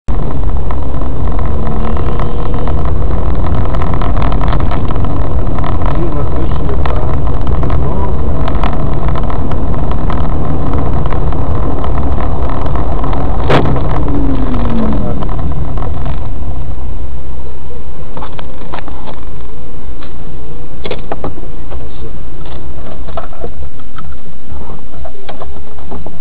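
Dashcam microphone inside a moving car: loud, steady road and engine rumble. About halfway through there is a sharp knock followed by a short falling tone, and the rumble eases somewhat in the last third.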